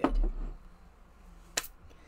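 A dull, low thump right at the start, then quiet room tone, then a single sharp click about a second and a half in.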